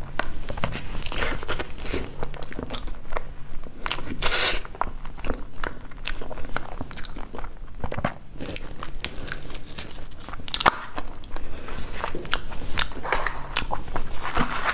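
Close-miked chewing of a soft, cream-filled crepe roll cake: wet, sticky mouth sounds and lip smacks in an irregular run of short clicks.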